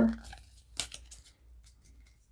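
Trading cards being handled and slid within a small stack: a few faint, short papery slides and flicks, mostly about a second in.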